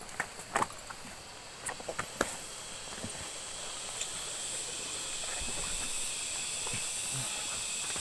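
Footsteps and scuffs on a rocky, leaf-covered trail, a few sharp clicks in the first couple of seconds. After that comes a steady outdoor hiss that grows slowly louder.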